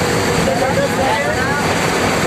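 Steady engine and road noise heard from inside a vehicle's cab moving at speed along a highway, with some indistinct talk over it.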